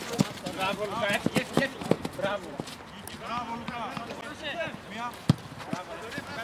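Men's voices calling out at a football match, with no clear words, and a few sharp knocks. The loudest knock comes about five seconds in.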